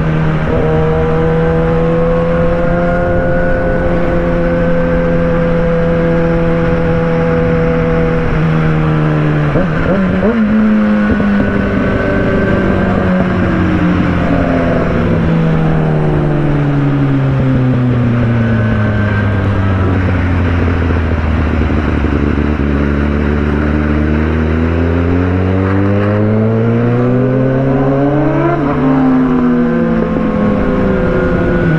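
Suzuki GSX-R sportbike's inline-four engine at highway speed: revs steady at first, then falling slowly for about ten seconds as the bike slows and climbing again as it speeds up, with a quick gear change near the end. Wind rush runs underneath.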